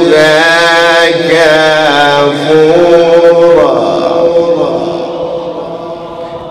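A man's voice in melodic Qur'an recitation (tajweed), holding long ornamented notes that bend slowly in pitch. The phrase dies away about four seconds in, leaving a fading tail.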